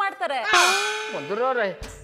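A sudden metallic clang about half a second in that rings on and fades away over about a second: a comedy sting sound effect.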